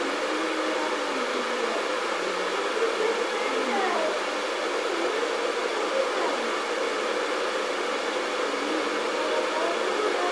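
A steady rushing noise, like a fan or running appliance, with faint wavering voices under it.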